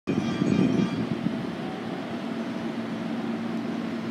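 Hankyu 5100-series electric train standing at a station platform, its equipment giving a steady low hum, with a louder rumble in the first second.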